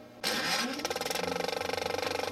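An engine-like mechanical sound with a fast, even pulsing starts about a quarter second in.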